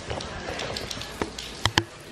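Light rain falling outside an open doorway, an even hiss, with a few sharp knocks and taps; the loudest two come close together near the end.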